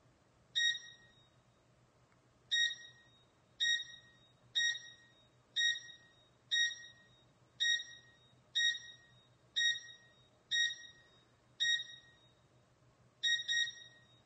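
Electronic alarm beeping: about a dozen short, high-pitched tones, roughly one a second, each starting sharply and dying away quickly, ending in a quick double beep, over a faint steady hum.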